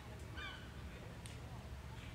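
Faint honking calls of waterfowl, the clearest a short falling call about half a second in, over a low steady hum.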